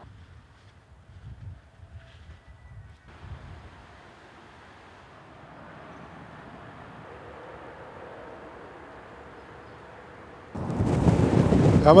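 Wind: low, uneven gusts, then a quiet steady airy hiss. About ten and a half seconds in, strong wind starts buffeting the microphone much louder.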